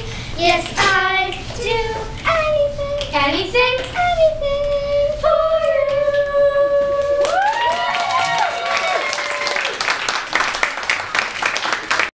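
Group of children singing, closing on one long held note; about seven seconds in, voices slide upward and clapping from the audience breaks out and fills the last few seconds.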